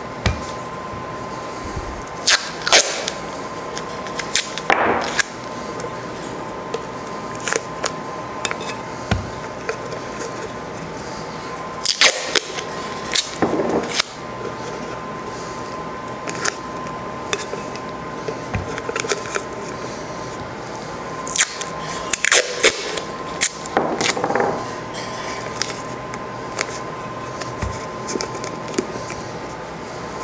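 Masking tape being pulled off the roll and torn into short strips, with rustling and pressing as the strips are folded over the rim of a stainless steel tumbler. The tearing comes as several short bursts spread through, in clusters, over a steady faint tone.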